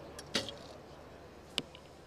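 Recurve bow shot: a sharp crack as the string is released about a third of a second in, then a short sharp click about a second and a quarter later as the arrow strikes the target.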